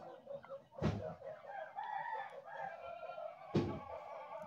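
Faint, wavering bird calls in the background, like a domestic fowl, with two short soft knocks: one about a second in and one near the end.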